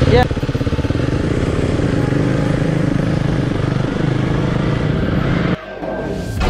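Motorcycle engine running steadily at low revs, cutting off abruptly near the end.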